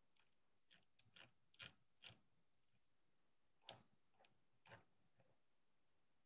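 Near silence on a video call, broken by about nine faint, irregular clicks over the first five seconds.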